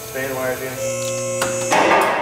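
A short electric guitar chord held for about a second, a music sting, after a couple of spoken words. It cuts off and is followed by a brief loud burst of noise near the end.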